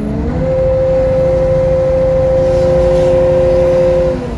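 Kato 20-ton mobile crane's diesel engine revving up and then held steady at high revs, heard from the operator's cab.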